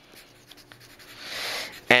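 Graphite pencil writing on notepad paper: soft scratching strokes with a few light ticks, swelling in a longer stroke near the end.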